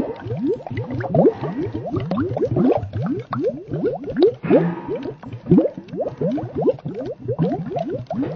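Slowed-down bubbling water sound effect: a dense run of short rising bloops, several a second, overlapping throughout.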